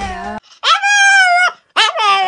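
Small Chihuahua-type dog giving a drawn-out, howling vocalisation that lasts about a second and holds a fairly steady pitch. A second howl begins near the end, starting high and dropping.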